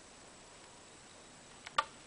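Hard plastic iPhone cases handled in the hands, mostly quiet, with two light clicks close together near the end as a case is turned over.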